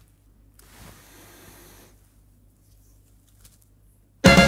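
Quiet room tone with a steady low hum. A faint rustle about half a second in lasts for over a second, and a few small clicks come near the end, the sound of headphones being handled and adjusted.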